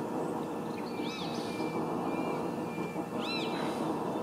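A few faint bird chirps, short arched notes, about a second in and again just after three seconds, over a steady low background rumble.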